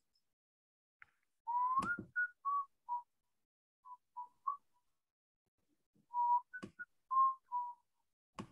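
A person whistling an idle tune: a note sliding upward, then a string of short notes, a pause in the middle, and a second string of notes near the end, with a few sharp clicks between.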